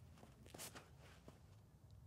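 Near silence with a few faint scuffs and taps, the clearest about half a second in, from a disc golfer's footsteps on a concrete tee pad during a throw.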